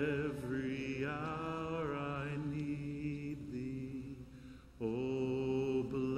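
A man's voice singing a slow hymn in long, drawn-out notes, with a quieter break about four seconds in before the next phrase begins.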